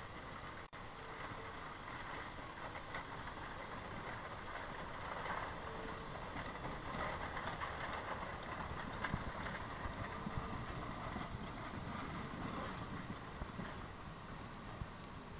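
Shay geared steam locomotive working past while hauling loaded log cars, getting louder toward the middle, followed by the rolling of the log cars' wheels on the rails.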